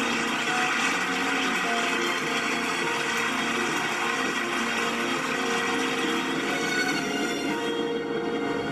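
Crowd applauding steadily, heard through a television's speaker.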